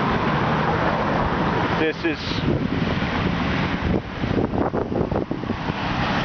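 Steady rush of passing road traffic, with a few brief crackles in the last two seconds.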